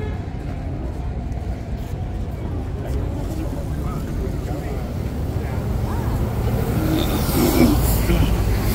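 Busy city street ambience: road traffic running steadily under the murmur of a crowd of passers-by talking, growing a little louder near the end.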